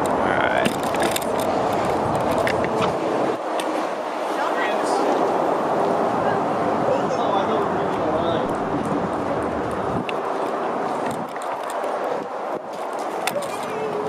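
Indistinct voices of several people over a steady rush of outdoor background noise.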